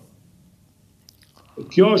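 A pause in conversation: faint room tone with a few soft clicks, then a man starts speaking near the end.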